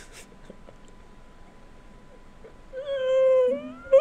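Near-silent room background, then near the end a drawn-out, high-pitched vocal call lasting about a second, held fairly level before bending upward as it ends.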